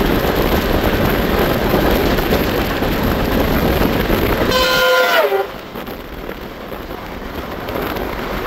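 Steady wind and running noise of a moving Indian express train heard from its open door. About four and a half seconds in, the air horn of an oncoming electric locomotive sounds for under a second, dropping in pitch as it passes. The noise then falls quieter as the other train's coaches run alongside.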